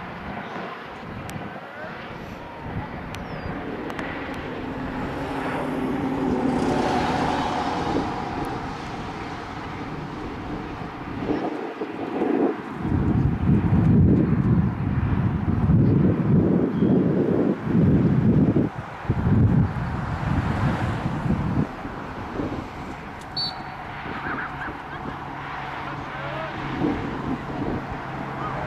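Open-air field ambience with wind gusting on the microphone in loud, uneven surges through the middle of the stretch. Earlier, a distant engine drone swells and fades.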